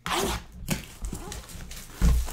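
A shrink-wrapped card box being handled on a table: a short burst of plastic rustling at the start, then light scattered knocks and rubbing.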